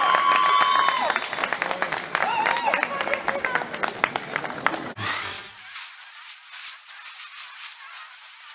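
Spectators clapping and cheering, with voices calling out over the applause. About five seconds in it cuts off abruptly to a thin, hissing outro sound.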